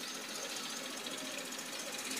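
Faint steady background noise, a low hiss with a fine rapid buzz and no clear event.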